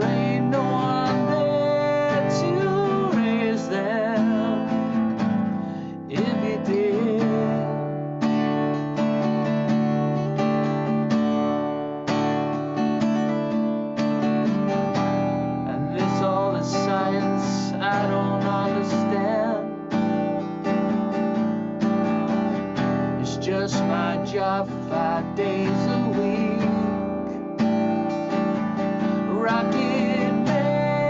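Acoustic guitar strummed in a steady rhythm of open chords, with a man singing along.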